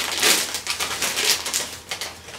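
Plastic packaging crinkling and rustling in irregular crackles as novelty clips are handled and pulled from their card.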